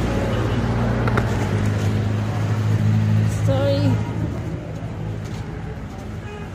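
A motor vehicle's engine running close by in street traffic, a steady low drone that fades away about four seconds in, with passers-by voices in the background.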